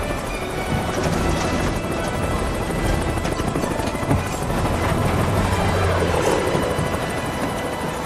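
Helicopter rotor and engine running steadily and loudly, with dramatic film music mixed underneath.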